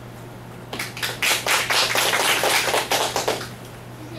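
Audience applause: a short round of clapping that starts about a second in and dies away shortly before the end.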